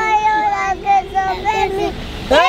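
Children singing a tune with long held notes.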